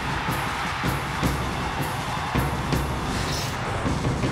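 Theme music for a TV news sports segment's opening graphic, with a steady drum beat of about two strokes a second over a full, dense backing.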